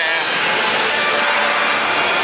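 Stadium public-address speakers playing the soundtrack of the club's hype video: a loud, steady, rushing wash of sound that echoes around the stadium.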